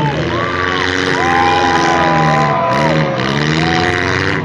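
Several compact cars' engines running and revving at once in a demolition derby, their pitches rising and falling and overlapping, over the noise of a crowd.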